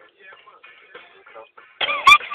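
Music playing, with a pitched melodic line that wavers throughout.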